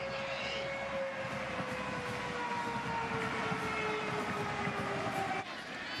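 Stadium siren sounding to mark a touchdown: one long tone that slowly falls in pitch and stops about five and a half seconds in, over steady crowd noise.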